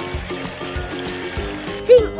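Background music with a repeating pattern of notes, over the splashing churn of a toy amphibious remote-control car's wheels paddling through pool water. A voice starts just at the end.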